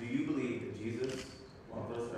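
A man's low voice, no clear words, into a microphone in a large hall. It fades about a second and a half in.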